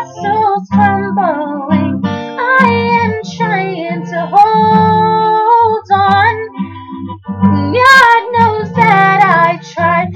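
A teenage girl singing a pop song to her own strummed acoustic guitar, with one long held note in the middle.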